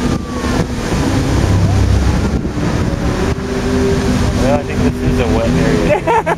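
Water jets of the Bellagio music fountain rushing and spraying, a loud, steady noisy rumble, with crowd voices murmuring over it.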